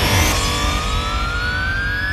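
A slowly rising synthesizer sweep over electronic music with a steady bass: the build-up of a TV programme's title jingle.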